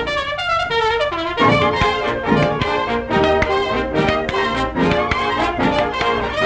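Jazz-band music from a 1931 cartoon soundtrack, trumpets and trombone carrying the tune over a regular beat.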